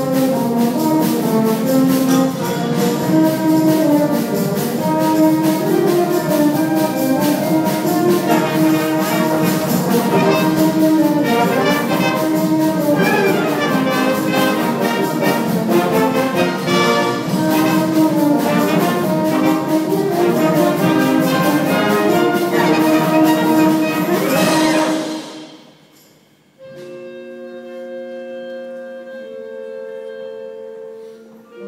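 School concert band of woodwinds and brass playing a loud full-ensemble passage. It cuts off about 25 seconds in, and after a short pause a soft passage of a few long held notes begins.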